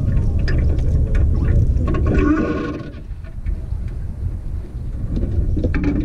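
Wind rumbling on the microphone of a camera in an open boat, with scattered small knocks and clicks from the boat and fishing tackle and a brief louder noise about two seconds in.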